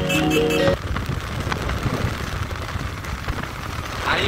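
Background music that cuts off abruptly just under a second in, leaving a steady rushing noise of wind and road from a moving motorcycle.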